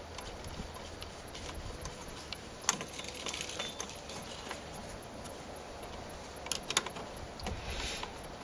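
Small metal bolts clicking and clinking as fingers lift them out of an LPG vaporizer's cover: a few sharp, scattered clicks over a faint steady low hum.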